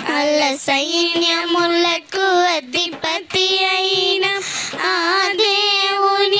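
Young girls singing a Christian worship song together, with long held notes that waver with vibrato and short breaks for breath about two and three seconds in.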